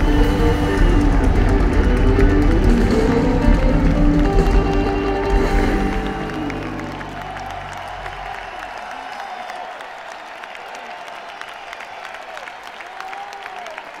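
A rock band playing the last bars of a song live; the music stops about six seconds in. A large crowd then applauds and cheers.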